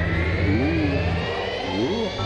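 Cartoon engine sound effect for a small submersible: a steady low hum under a whine that climbs slowly in pitch.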